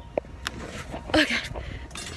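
A few sharp knocks and scuffs from climbing over a wooden fence, with a short voiced sound a little over a second in.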